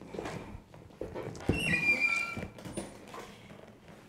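Barber chair being swivelled by hand: a few light knocks and a brief high-pitched squeak about a second and a half in.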